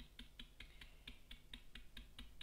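Dry stencil brush dabbing paint through a stencil onto a plastic pot: faint, quick, even taps, about five a second.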